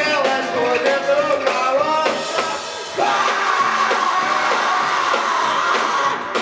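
Experimental rock band playing live with saxophone, electric guitar, keyboard and drums: drum strokes and shifting pitched lines over the first two seconds, then one long held note from about three seconds in. The recording is thin, with little bass.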